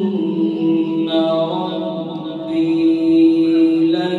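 A man chanting a Quran recitation in the melodic tajweed style, with a step in pitch at the start and then one long held note to the end.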